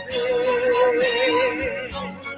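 A Portuguese worship song playing: a singer holds one long note with vibrato over the instrumental backing, letting it go just before the end.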